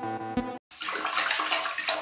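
After background music cuts off about half a second in, a steady rushing, splashing water noise: a cartoon sound effect for a toilet being unclogged.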